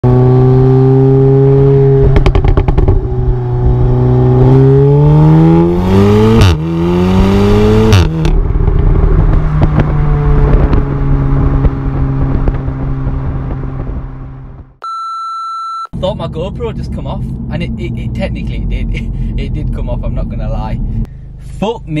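Exhaust of an Audi S3 8V facelift with its resonator deleted, heard from right at the rear bumper: its turbocharged four-cylinder runs steadily, then rises in pitch as the car accelerates, with two sharp cracks midway, before settling and fading out. A short single-tone beep follows, then talking.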